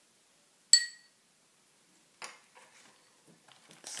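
A struck percussion instrument gives one bright, ringing clink that dies away within a quarter second, followed by a softer tap about two seconds in.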